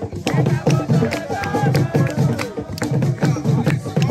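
Traditional Ghanaian drumming played live for dancers: deep drum strokes in a steady, quick beat of about two to three a second, with sharp, higher strikes between them.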